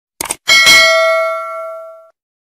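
Subscribe-button animation sound effects: a quick double click, then a bright notification-bell ding about half a second in that rings and fades away over about a second and a half.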